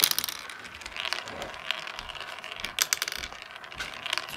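Marbles rolling and clicking through a plastic marble run, with sharp clicks as they strike the track pieces, loudest right at the start.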